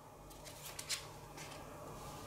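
Cards being drawn from a deck and laid on a table: a few faint papery slides and flicks, the sharpest just under a second in.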